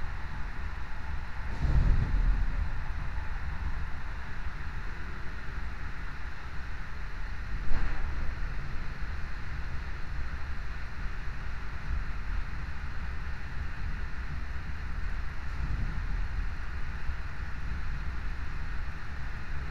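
Train running at speed, heard from inside the carriage: a steady low rumble with a louder swell about two seconds in and a single sharp knock near eight seconds.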